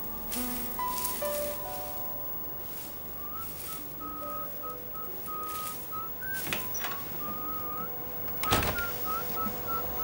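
Soft background music of held notes, then from about three seconds in a person whistling a simple tune in short phrases. A couple of brief knocks or rustles are heard near the middle and near the end.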